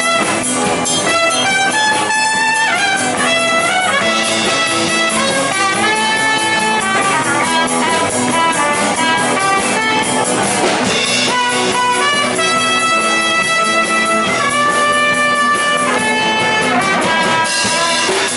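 Live electric band playing an instrumental boogie break: a lead guitar line of long held and sliding notes over rhythm guitar, bass and drum kit.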